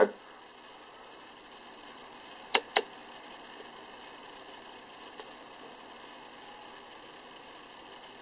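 Faint steady hiss with two sharp clicks in quick succession about two and a half seconds in.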